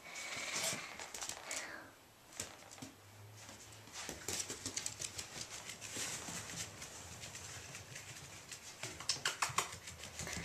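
Irish Jack Russell Terrier puppy's claws pattering on a hard floor as it runs about: many light, quick clicks, busiest in the second half.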